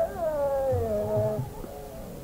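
Hindustani classical singing by a male khayal vocalist. A sustained sung note glides slowly downward in a long sliding phrase (meend) over a steady drone.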